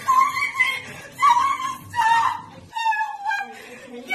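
A woman's high-pitched wailing shrieks without words, four or five drawn-out cries in a row, the last one sliding slightly lower.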